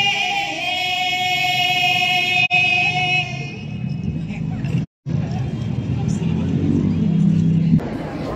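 A high singing voice holds one long, steady note for about three and a half seconds, then stops. After a brief gap about five seconds in, low rumbling background noise runs on and cuts off abruptly just before the end.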